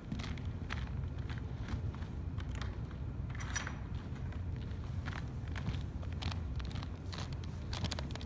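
Scattered footsteps and light clicks over a steady low hum, with a brief rattle about three and a half seconds in: someone walking off and rummaging for a drill bit.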